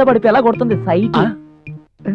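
Film dialogue: a voice speaking over steady background music, trailing off into a brief pause near the end.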